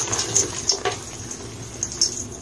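Hands squeezing and crumbling balls of gym chalk into powder: a cluster of soft crunches and powdery squeaks in the first second, then quieter crumbling.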